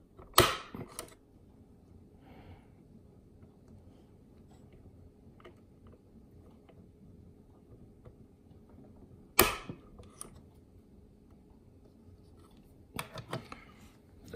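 Spring-loaded center punch snapping twice, about nine seconds apart, as it knocks a small pin into the pinion gear on a sewing machine's hook drive shaft to get the pin started. A few light clicks of metal handling come near the end.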